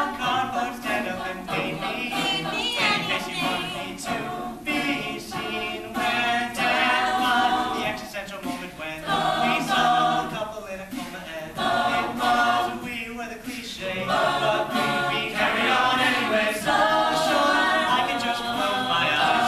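Mixed-voice a cappella group of men and women singing a pop song, voices only with no instruments.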